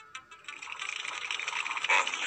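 Cartoon mechanical sound effect: a hissing, whirring noise that builds steadily in loudness from about half a second in, after a few sharp clicks at the start, over background music.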